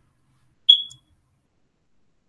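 A single short, high-pitched electronic beep about two-thirds of a second in, fading away quickly; otherwise silence.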